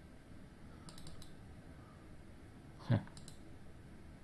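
Faint computer mouse clicks: a quick cluster of three or four about a second in, and a double-click just after a short spoken 'huh' near the end.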